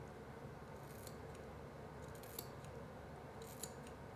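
Professional hair scissors snipping into a lock of hair held straight up: a few faint snips, coming in small clusters about a second apart.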